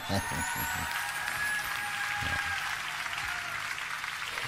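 A sitcom laugh track: canned audience laughter and applause runs steadily, with faint tones sliding slowly downward over it.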